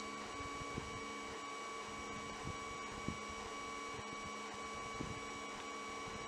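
A steady hum with a faint high whine running through it, and a few faint soft knocks scattered across it, the clearest about three seconds in.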